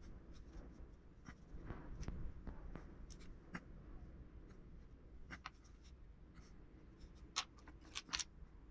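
Faint, intermittent scratching of a hand-held sculpting tool working modelling clay, with a few light clicks; the sharpest click comes near the end.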